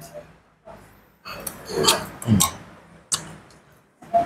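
A man eating a spoonful of meatball soup, with mouth noises and an appreciative, falling "hmm" about two seconds in. A single sharp click comes near three seconds in.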